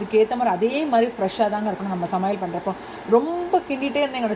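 A woman talking over the faint sizzle of chopped onions frying in oil in a pan.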